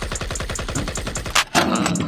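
Rapid, evenly spaced burst of machine-gun fire, a sound effect in the backing hip-hop track, stopping about one and a half seconds in.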